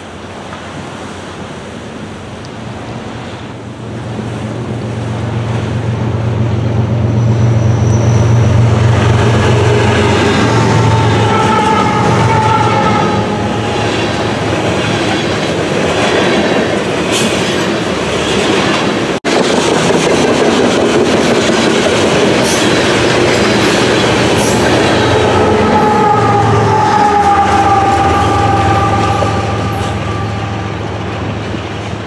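Freight train passing close by: the diesel locomotive's rumble builds over the first several seconds, then a string of tank cars rolls past, wheels running on the rails with a few brief high wheel-squeal tones. The sound cuts out abruptly for an instant about two-thirds of the way in, and the train noise carries on after it.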